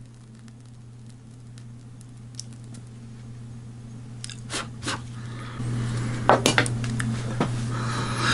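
A few light clicks and taps from small tools being handled, in two short clusters in the second half, over a steady low hum that grows louder partway through.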